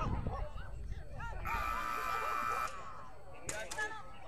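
A steady electronic buzzer tone sounds for a little over a second midway, over voices; in a Gamblers agility run a buzzer like this marks the end of the opening point-gathering period. A few sharp clicks follow near the end.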